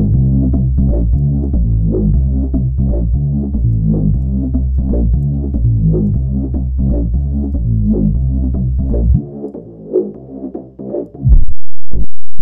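Softube Monoment Bass sampler-based synth bass playing a looped electronic bass line with a kick drum, run through the plugin's drive and reverb effects. The notes pulse in a steady rhythm. About nine seconds in the deep low end drops out, leaving thinner, quieter notes that break up near the end.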